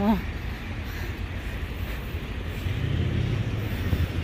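City street traffic: a steady low rumble, swelling near the end as a car draws close and passes.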